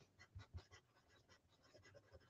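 Faint scratching of a wooden pencil writing on paper in many short strokes, with a couple of soft knocks about half a second in.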